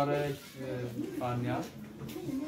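A man's voice making two short, drawn-out, low-pitched vocal sounds about a second apart.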